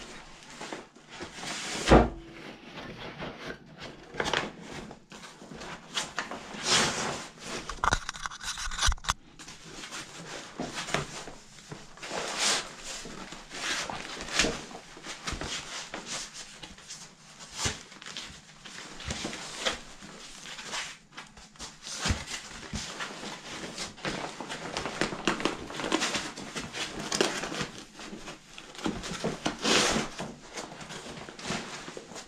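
Gear being handled and packed into a padded foil bag: irregular rustling, scraping and clicking, with a loud knock about two seconds in.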